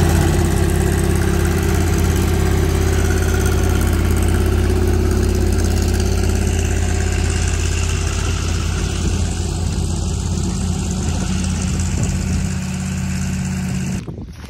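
Stationary engine powering an irrigation well pump through a right-angle gear drive, running steadily at constant speed to supply water to a center pivot.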